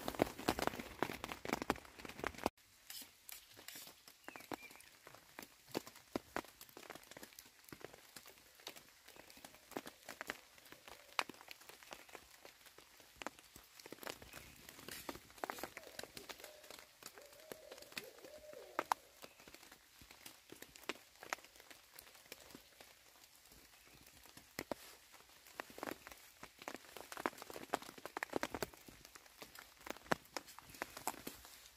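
Rain dripping onto leaves in a wet forest: faint, irregular patter of single drops ticking.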